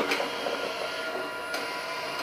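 Narwal robot vacuum and mop running, a steady motor whir.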